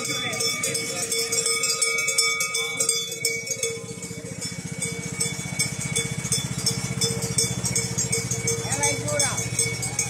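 Small engine of a ride-on lawn mower running steadily close by, coming in about four seconds in and staying to the end. Throughout, bells jingle and clink and voices can be heard.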